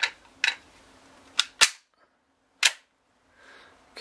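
Sharp metallic clicks of a Ruger 22/45 Lite .22 pistol being handled as it is cleared, the action and the empty magazine clicking. There are about five clicks, the loudest a close pair about a second and a half in.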